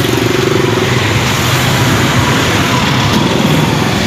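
Street traffic, loud and steady, with the engine of a motor vehicle passing close by, its hum rising in pitch in the first second and again near the end.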